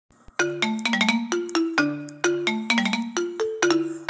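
Intro of a rap backing beat: a looping melody of sharply struck notes that each fade, starting about half a second in.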